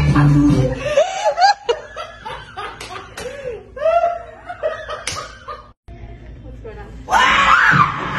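A woman's high, swooping vocal cries and laughter, broken by a few sharp impacts. Music stops about a second in and starts again near the end.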